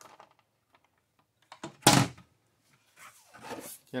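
A single sharp knock about two seconds in, preceded by a couple of faint clicks, then a soft rubbing, shuffling noise near the end: handling noise in a quiet workshop.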